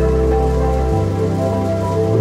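Ambient background music with sustained, held chords; the bass and chord change about a second in.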